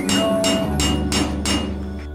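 Knocking on a wooden door, a quick even run of about six knocks, roughly four a second, that dies away near the end.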